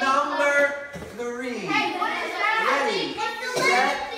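Voices, mostly children's, talking and calling out.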